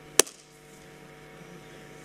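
A single sharp click a fraction of a second in, then a faint steady electrical hum from the sound system.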